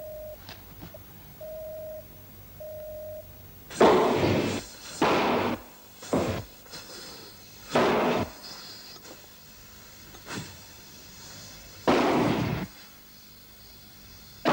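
Three short steady beeps, then a series of about six sudden loud bursts spread over eight seconds, each dying away within a second: small explosions or flare-ups in a model building set alight as a fire test.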